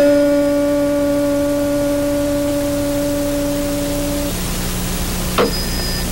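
Metal tuning fork struck and ringing with a steady pure tone and a fainter tone an octave above, cut off abruptly after about four seconds. A low steady hum runs beneath it, and a click comes near the end.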